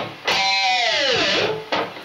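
Electric guitar playing a held note that slides steadily down in pitch for about a second, then stops; a short note follows near the end.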